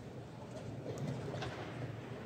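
Room tone of a large playing hall: a steady low hum with a faint haze of background noise, and two light clicks about a second in.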